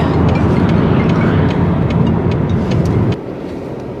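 Car cabin noise: a steady low rumble of engine and road, which drops away sharply about three seconds in.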